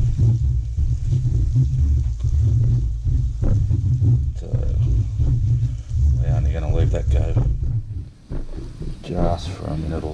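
Grated garlic and ginger sizzling gently in melted butter in a fry pan, stirred about with metal tongs, over a strong low rumble that fades about eight seconds in.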